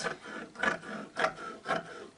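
Scissors snipping through folded tulle: four short cuts, about two a second.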